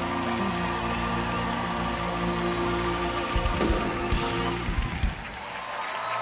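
Live band music holding a sustained chord, closed out with a few hard drum hits and a cymbal crash between about three and a half and five seconds in, as the song ends.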